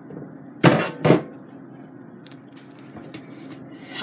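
Two knocks, about half a second apart, of a hard plastic hydroponic reservoir bumping against a stainless steel sink as it is set down, followed by a few faint ticks.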